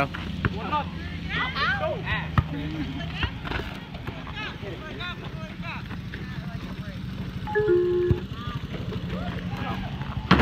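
Several people's voices calling out at a distance during a game of basketball, with a few sharp knocks of the ball bouncing, over a steady low hum.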